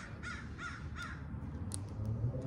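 A bird calling three times in quick succession, each call a short arched note, over a low steady hum.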